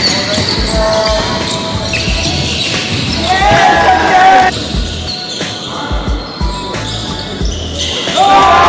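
Basketball game sounds on a hardwood court: the ball thudding on the floor at a steady rhythm, sneakers squeaking, and players calling out.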